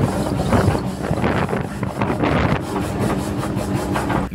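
A car being driven, heard from inside the cabin through a phone's microphone: a steady low engine hum under rough wind and road noise. A man laughs near the start.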